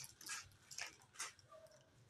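Faint short scuffs and rustles, about four in the first second and a half, with a faint thin tone just past the middle.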